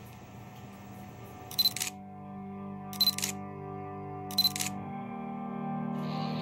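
Three camera shutter clicks, each a quick double click, about a second and a half apart, over soft sustained music that grows louder.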